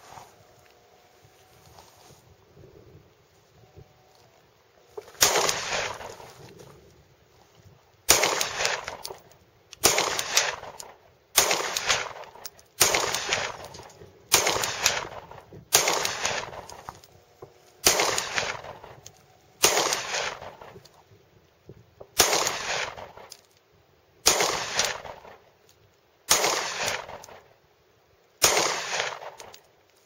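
A Sig P228 9mm pistol fired in slow, deliberate single shots: thirteen shots, starting about five seconds in, spaced one and a half to two and a half seconds apart. Each shot is a sharp crack that fades out over about a second.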